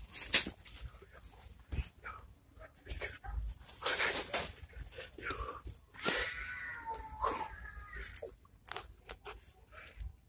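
Plastic-wrapped paper towel packs rustling and crinkling as they are handled, in scattered short bursts. A brief high-pitched, wavering voice-like sound comes in about six seconds in.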